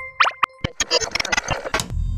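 Electronic sound effects of an animated logo sting: a held synth tone and a few quick pitch swoops, then a rapid flurry of glitchy clicks that ends in a hit as the logo settles.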